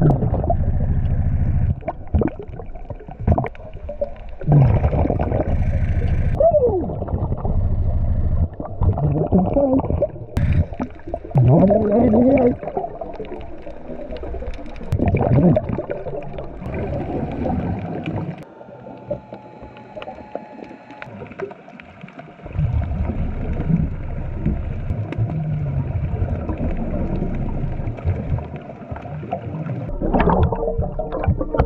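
Underwater sound of a diver breathing on a hookah regulator: exhaled bubbles rumble and gurgle in stretches of a few seconds, with a few squeaky rising and falling tones, and a quieter lull about two-thirds of the way through.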